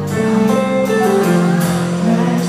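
Live band playing an instrumental passage led by guitar, with held notes changing pitch and no singing.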